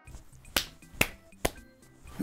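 Three sharp finger snaps, evenly spaced about half a second apart.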